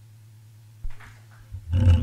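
Steady electrical hum from the table microphone system, with a dull thump about a second in as the microphone is handled. Near the end comes a brief, loud, gruff vocal sound from a man right up at the microphone.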